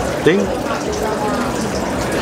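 Restaurant room noise: a steady rushing hiss under the faint murmur of other people talking.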